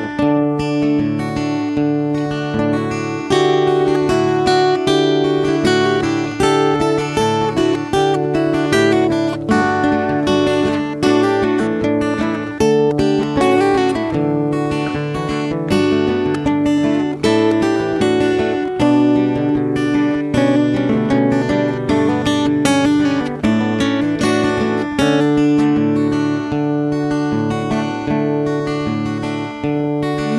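Instrumental break in an acoustic folk-rock song: acoustic guitar strumming a steady rhythm, without vocals.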